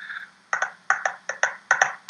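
A drum fill sketched out over a video call: a quick run of about ten short, sharp percussive hits in an uneven rhythm, starting about half a second in.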